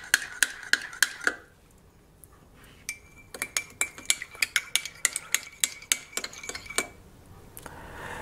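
A metal teaspoon stirring a drink in a ceramic mug, clinking against the sides a few times a second, each clink ringing the mug. It pauses for about a second and a half, then stirs in a second mug that rings at a higher pitch, stopping near the end.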